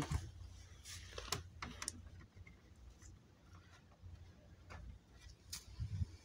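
A handful of faint, short clicks and light knocks from handling the exit sign and emergency light combo fixtures as they are set up for testing, over a low hum. Three clicks fall in the first two seconds and two more near the end.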